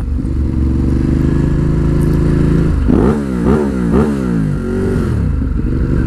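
Ducati Hypermotard 821's L-twin engine running steadily under way, then revving up several times in quick succession about halfway through before settling back to a steady run.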